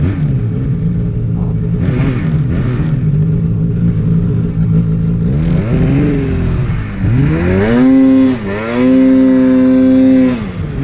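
Polaris Axys 800 two-stroke snowmobile engine working in deep powder: it runs steadily at part throttle, then revs up sharply about seven seconds in, dips once and holds high revs near the end.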